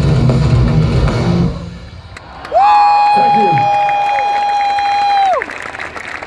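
Heavy metal band playing live through a festival PA, with dense low guitars and drums; the music breaks off about a second and a half in. A single loud held note slides up into pitch, holds steady for nearly three seconds and bends down as it stops. Then the crowd cheers and claps.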